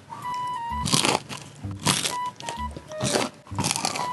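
Crisp crunching bites into deep-fried, batter-coated sausage skewers, four loud crunches spaced roughly a second apart, over light background music.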